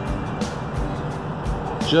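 A steady rush of road traffic, with a few soft low thuds, under faint background music.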